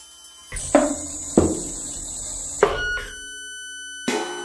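Free-improvised electro-acoustic noise music: after faint steady tones, a harsh burst of noise with a low rumble starts about half a second in, struck by three sharp hits, then gives way about three seconds in to two steady, high, pure tones.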